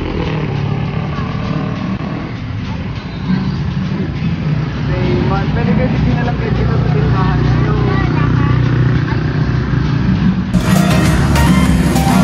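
Indistinct voices over a steady low engine hum, with some music mixed in. About ten and a half seconds in, the sound cuts to acoustic guitar strumming.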